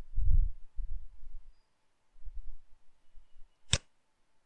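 Low, muffled bumps on the desk or microphone, loudest in the first second, then one sharp computer mouse click near the end.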